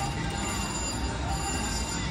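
Electronic chimes and ringing from a VGT video slot machine as its reels spin, over the steady din of a casino floor full of other slot machines.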